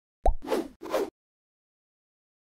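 A logo sound effect: a quick plop with a fast-falling pitch, followed by two short hissy bursts, all over by about a second in.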